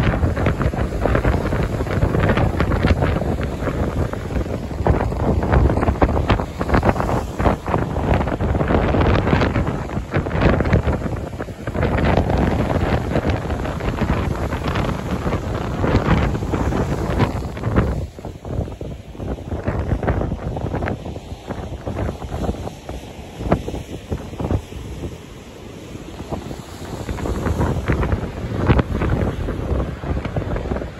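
Wind buffeting the microphone over the rumble of heavy surf breaking on rocks below. The gusts ease for a stretch in the second half, then pick up again near the end.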